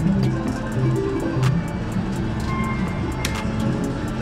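Slot-machine music on a casino floor: a run of held synthesized notes, with sharp clicks scattered through it and a short higher beep midway.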